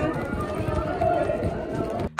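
Poor-quality phone recording of a fan meet-and-greet line: indistinct voices over a dense, noisy background.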